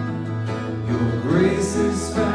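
Live acoustic guitar holding chords, with a man's singing voice coming in a little past halfway through.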